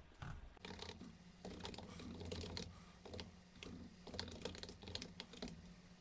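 Computer keyboard typing: quick, irregular keystrokes, faint, over a steady low hum.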